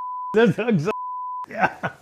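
Censor bleep: a steady, single-pitched beep that blanks out the speech. It sounds twice, each about half a second long, with a voice briefly heard in between.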